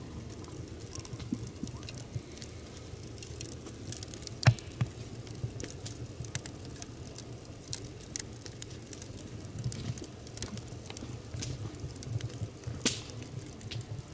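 Wood fire burning in an adobe earth oven, crackling with irregular snaps and pops over a low steady rumble. The sharpest pop comes about four and a half seconds in, and another comes near the end.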